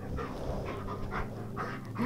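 German Shepherd panting close by, soft quick breaths at about two or three a second.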